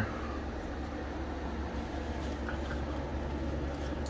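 Steady low hum and faint hiss of room background noise, with no distinct events.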